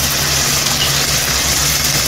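Squid frying in a large iron pan, a steady sizzle, over a steady low hum.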